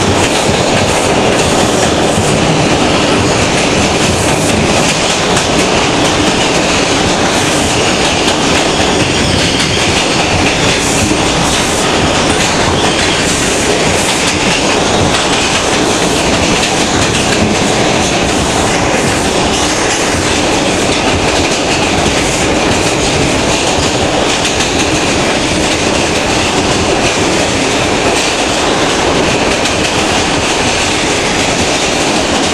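Interior noise of an R142 New York City Subway car running at speed: a loud, steady rumble of wheels on rail with running clatter, unchanging throughout.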